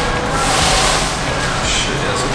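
Plastic wrapping on a barber chair crinkling as it is handled, in two spells of rustling, the longer one early and a short one near the end.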